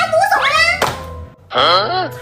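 A woman's voice speaking in an exaggerated, wailing tone over background music, with a single sharp thunk a little under a second in. After a brief dip, her voice comes back with sweeping pitch.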